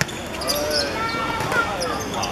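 A football struck on a hard outdoor court, one sharp thud at the start, followed by players' voices calling out during play.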